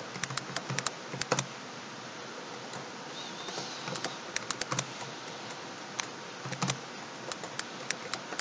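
Computer keyboard typing in several short bursts of keystrokes separated by pauses.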